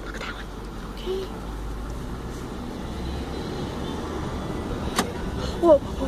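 A truck's engine running with a low steady rumble, heard from inside the cab. One sharp click comes about five seconds in, and an excited voice starts just before the end.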